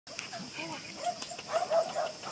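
Puppies whimpering and yipping in short, high arching cries, several a second, a little louder near the end.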